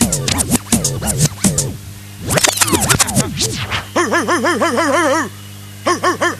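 Drum and bass mixed live on turntables, with the DJ scratching and rewinding the record. Fast drum hits break up into falling pitch sweeps. Then a warbling tone plays, cuts off for about half a second, and starts again near the end.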